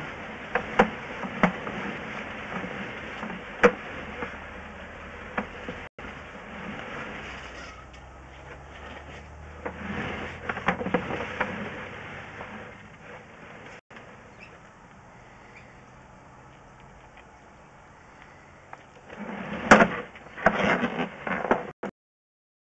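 Drain-inspection camera and its push rod being pulled back through a sewer pipe: scattered sharp clicks and knocks against the pipe, a quieter spell past the middle, then a louder cluster of knocks and scraping near the end.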